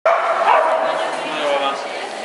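A dog barking and yipping in a large indoor hall, over people talking.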